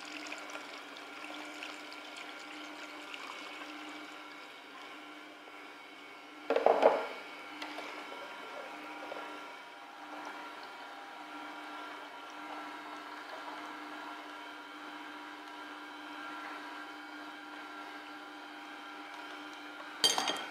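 Steady motor hum of a slow juicer running while freshly pressed juice is poured from its jug through a sieve, the liquid trickling. A brief louder noise comes about seven seconds in.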